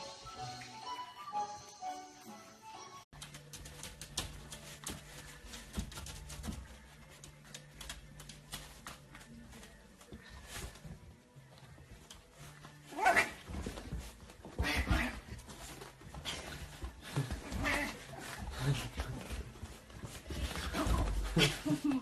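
Background music for the first three seconds. After a cut, a pug puppy barks at its reflection in a mirror, a string of short barks from about halfway through.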